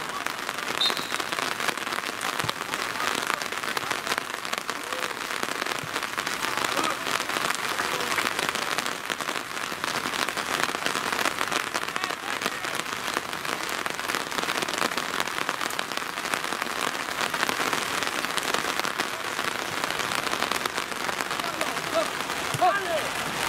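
Rain falling steadily: a dense, even crackle of drops that goes on without a break.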